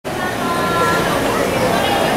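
Crowd chatter: many people talking at once, with no single voice or event standing out.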